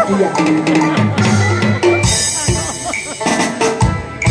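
Taiwanese opera (gezaixi) accompaniment ensemble playing an instrumental passage between sung lines. Held melodic notes fill the first half, then several drum strikes come in the second half.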